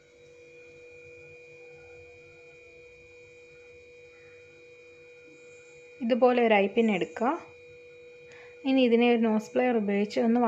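A faint steady electrical hum made of a few held tones, then a woman speaking in two short stretches over it, starting about six seconds in.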